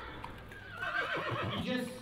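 A horse whinnying once, a call of about a second that starts just under a second in.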